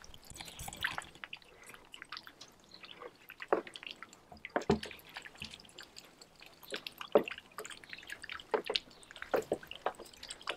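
Water splashing and dripping as French Muscovy ducks paddle and dip their bills and heads into a shallow plastic kiddie pool, foraging for feeder fish: irregular small plops and drips, with a few louder splashes.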